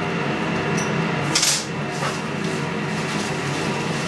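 Paper tissue crinkling and rustling as a titanium pendant blank is wiped dry, with one short, sharp crackle about a second and a half in. A steady machine hum from the equipment underlies it.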